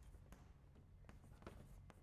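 Chalk writing on a blackboard: faint, irregular chalk taps and scratches, a few a second.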